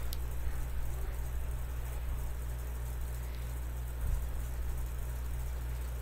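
Room tone with a steady low hum, a faint click just after the start and a soft bump about four seconds in.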